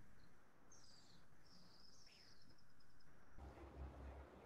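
Near silence: quiet room tone from a video call, with a few faint, high chirps during the first three seconds.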